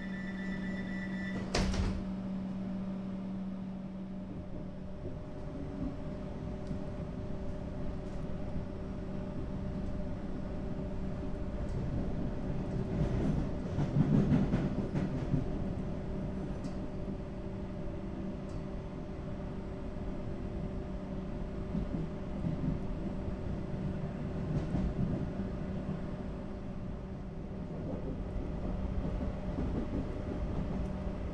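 Comeng electric suburban train from inside the carriage: the sliding doors shut with a bang about a second and a half in, then the train pulls away, with a steady electrical hum and wheel-on-rail rumble that build as it gathers speed, loudest around the middle.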